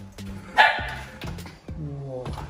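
Background music with one loud, short dog bark about half a second in.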